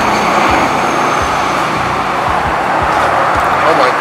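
Steady street traffic noise, with a box truck driving past close by, under background music.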